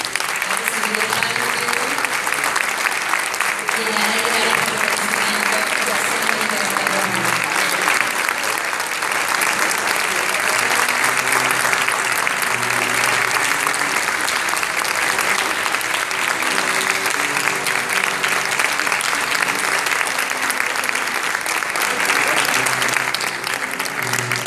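A large audience applauding: many hands clapping in a loud, steady, sustained round, with music playing faintly underneath.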